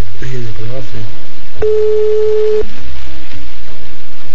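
A single steady telephone line tone, one beep about a second long, sounding over a music bed and voices.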